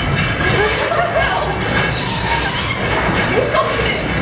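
Steady, loud machinery rumble with a hiss of noise over it, from machines running in a stroopwafel factory, with faint voices underneath.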